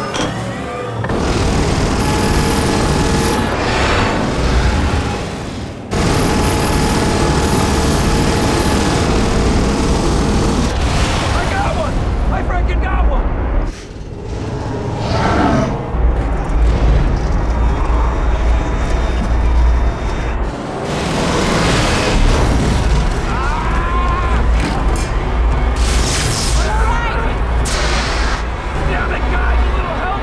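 Dense action-film soundtrack: film score music under repeated booms and a heavy low engine rumble from spacecraft in a dogfight, with brief shouting. The mix drops out sharply twice, about six and fourteen seconds in.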